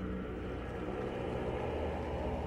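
Low, steady droning hum of film-soundtrack ambience, with no speech.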